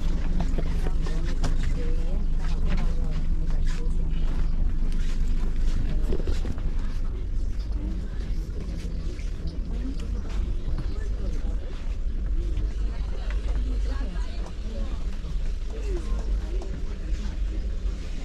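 Indistinct chatter of passengers inside a stationary train coach, with scattered knocks of bags and seats, over a steady low rumble.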